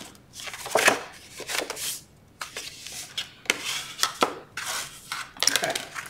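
Sheet of cardstock being folded along its score lines and pressed flat by hand on a cutting mat: a run of irregular papery rustles and scrapes, with a short pause about two seconds in.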